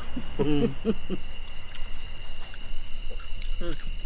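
Crickets chirping steadily in the night, one continuous high trill with a faster pulsing one above it. Short voice sounds break in about half a second in and again near the end.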